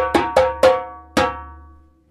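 12-inch fiberglass djembe with a fleece-covered synthetic head, played with hand slaps: four quick strikes, then one more just over a second in, each ringing out with a clear pitch.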